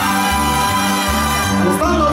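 Mexican banda (brass band) dance music, with sustained horn lines over a low bass line that steps to a new note about every half second in a steady dance rhythm.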